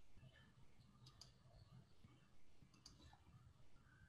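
Near silence: faint room tone with a few faint clicks, about a second in and again near three seconds.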